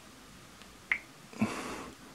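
Two light taps of a fingertip on a smartphone touchscreen, about half a second apart, the second followed by a short breathy noise.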